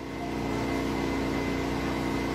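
Steady low engine-like drone at an even pitch, growing a little louder in the first half-second and then holding level.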